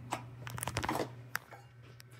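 Light plastic clicks and rustles of hands handling an incubator's plug hole and a small plastic medicine syringe, with one sharper click past the middle, over a steady low hum.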